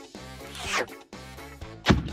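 Cartoon background music with two added sound effects: a swish that falls in pitch a little before halfway, then a short, sharp, loud swipe near the end.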